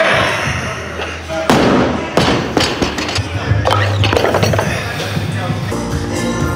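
A loaded barbell with Eleiko bumper plates is dropped from overhead onto the lifting platform after a snatch: one loud bang about one and a half seconds in, followed by a few smaller knocks as it settles. Background music plays throughout.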